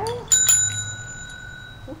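Domed metal desk bell struck twice in quick succession, its bright ring sustaining and fading over about a second and a half.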